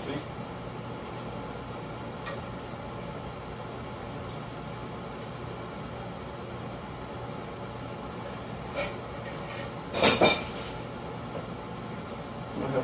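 Kitchen cookware being handled: a low steady room hum with a few faint clicks, then a short clatter of a metal skillet and dishes about ten seconds in.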